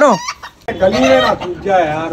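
Rooster giving a few loud, pitched calls, one falling sharply at the start. It is squawking because the hen has gone inside.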